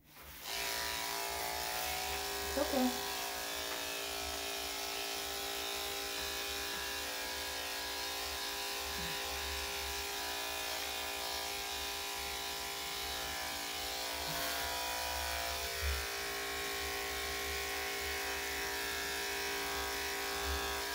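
Corded electric dog grooming clippers, fitted with a #7 blade, switched on and then running with a steady, even buzz as they shave a Yorkshire Terrier's leg fur.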